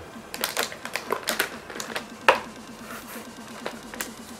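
Anti-static plastic bag crinkling and crackling as a motherboard inside it is handled in its cardboard box: a run of irregular sharp crackles, with one louder click a little past the middle.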